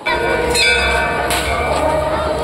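Metal bells struck twice, each strike ringing on in several held tones, over a steady low rumble.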